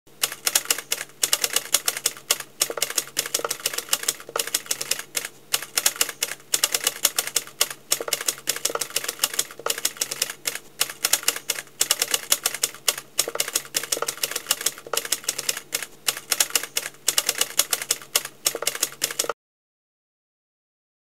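Typewriter keys clacking in a fast, unbroken run of keystrokes as the text is typed out. It cuts off suddenly near the end.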